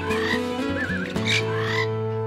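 Animal calls laid over acoustic guitar music: several short warbling, wavering calls, the longest and loudest near the end.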